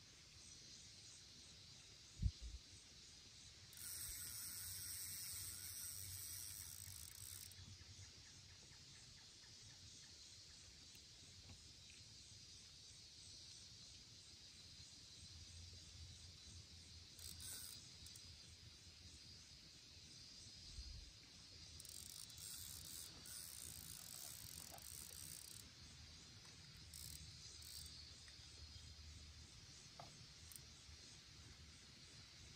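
Near silence outdoors, broken by a single short low thump about two seconds in. Later come two faint stretches of high hissing buzz: one about four seconds in that lasts some three seconds, and one in the second half that lasts a little longer.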